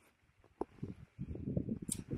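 Faint handling noise: a single click, then irregular low rustling and scraping as a hand grips the rubber traction strip on a dog sled runner.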